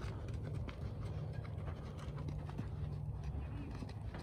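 Mustang walking on dirt, its hooves giving soft scattered footfalls over a steady low rumble.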